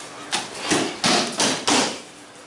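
Bodies landing on padded dojo mats as aikido partners take breakfalls after throws, with about five thuds and slaps in quick succession.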